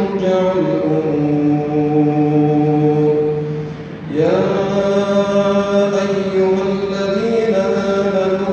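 An imam's voice chanting melodic Quran recitation in long, drawn-out held notes. There is a brief pause for breath a little before the midpoint, then the chanting resumes.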